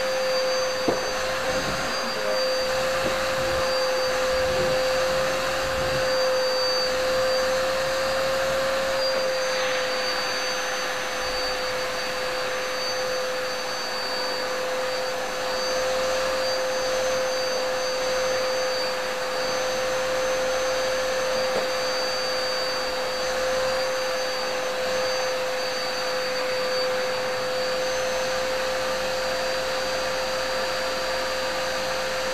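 Bauer UVF-01 water-filtration vacuum cleaner with a 2000 W motor, running steadily: an even rush of air under a constant whine. There is one short click about a second in.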